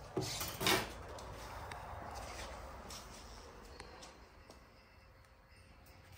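Quiet room with a few soft handling noises: two brief rustles in the first second, then faint clicks a few seconds in.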